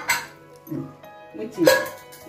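Background music with a few short bursts of voice over it.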